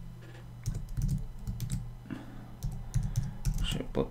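Computer keyboard typing: a run of irregular keystrokes as a word is typed.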